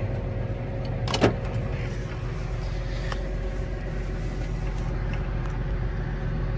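John Deere 8330's six-cylinder diesel engine idling steadily at low idle, heard from inside the cab. One sharp click about a second in, and a fainter one about three seconds in.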